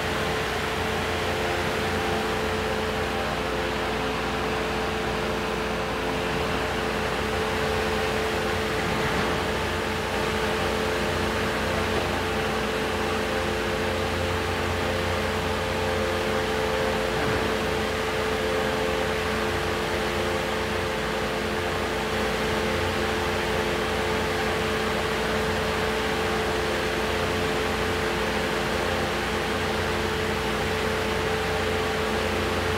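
Heavy demolition machinery running steadily: a constant mechanical hum with a fixed whine and no crashes or impacts.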